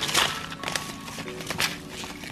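Paper seed packets and small items rustling and knocking as a hand rummages through a plastic storage bin, with a few light clicks.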